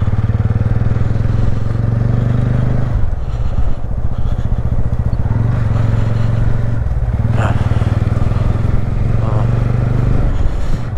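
TVS Ronin single-cylinder motorcycle engine running steadily at low road speed, heard from the rider's seat, with the engine note easing briefly about three seconds in.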